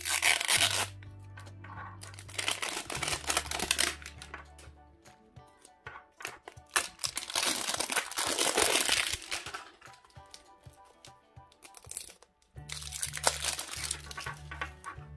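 Printed plastic wrapping being torn and peeled off an LOL Surprise toy ball, crackling and crinkling in four bouts, the longest in the middle, over background music.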